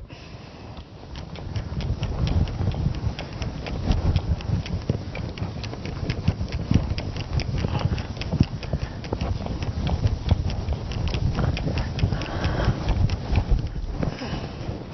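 Whiteboard eraser rubbed rapidly back and forth across the board, wiping off marker writing: a fast run of scrubbing strokes with a low rumble. It starts soft and gets louder about a second and a half in.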